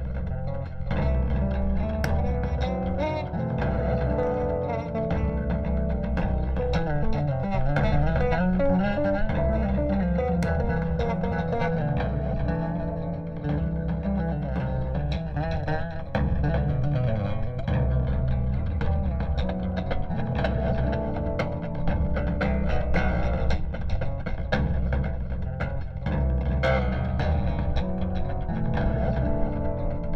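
Electric bass guitar played live through an outdoor PA system: a continuous instrumental piece with moving melodic lines over low bass notes.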